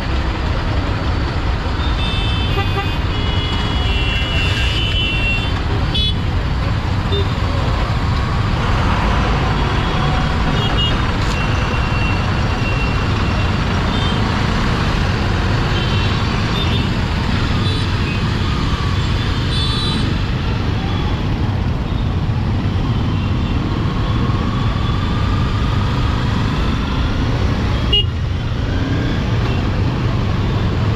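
Dense city traffic heard from a slow-moving Honda CBR250R motorcycle: a steady low rumble of engines and road noise, with vehicle horns tooting several times, the longest run of toots a few seconds in.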